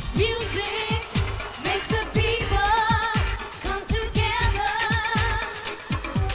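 Electronic dance-pop song performed live: a female lead vocal, sung with vibrato, over a pounding beat with repeated deep, falling bass sweeps.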